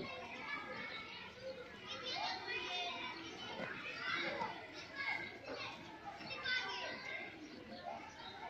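Children's voices: several kids talking and calling out over one another without a break.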